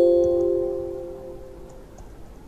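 A computer's system alert chime: one ding of several tones together, fading out over just under two seconds.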